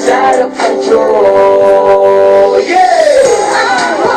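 A recorded song with a singing voice over the accompaniment. The voice holds one long note, then slides down in pitch about three seconds in.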